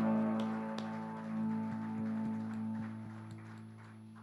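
A worship band's final held chord on keyboard and guitars, fading away slowly, with faint evenly spaced taps.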